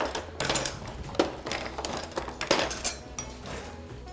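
Background music with several sharp clinks and knocks of kitchen utensils against a bowl and cutting board, the loudest about a second in and again about two and a half seconds in.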